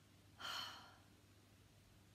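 A woman's single short sigh, about half a second in.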